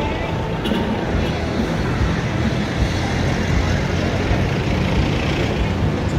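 City street traffic: engines and tyres of cars and a pickup-truck taxi passing close by, a steady low rumble.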